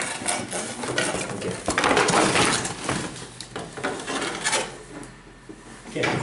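Cardboard boxes and packaging being handled as boxed items are worked out of a tight outer carton: a run of scrapes, rustles and small knocks, loudest about two seconds in and easing off towards the end.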